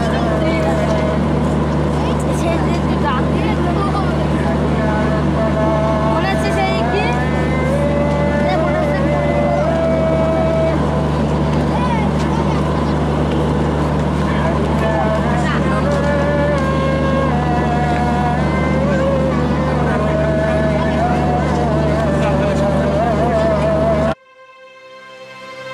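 Steady low hum of a standing diesel passenger train's engine under loud crowd chatter and calls from a packed platform.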